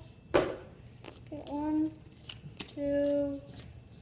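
Pokémon trading cards being pulled from their opened pack: one sharp snap about a third of a second in, then a few light clicks of card handling. A child's voice makes two wordless held notes in the second half.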